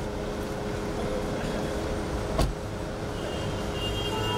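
A car's rear door shutting with a single sharp thump about two and a half seconds in, over the steady low rumble of the idling car and street traffic.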